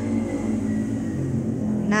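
Steady low hum of a running motor.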